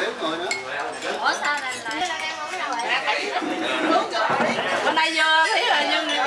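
Several people talking over one another around a meal table, with chopsticks and dishes clinking now and then.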